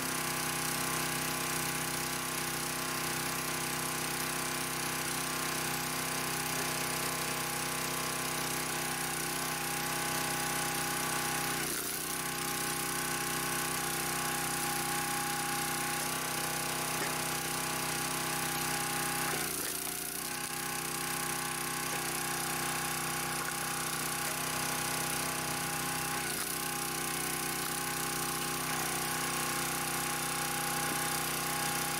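Kohler small gas engine of a County Line 25-ton log splitter running steadily at working speed. Its note wavers briefly about four times as logs are split.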